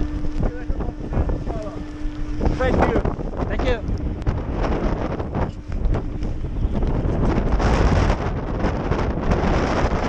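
Wind buffeting the camera's microphone during a chairlift ride in a snowstorm, a dense low rumble throughout. A steady hum from the lift station's machinery runs under it and stops about two and a half seconds in, as the chair pulls away.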